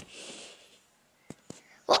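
A sharp click, then a soft breathy whisper of about half a second, then two faint clicks a moment apart; a girl's voice starts just before the end.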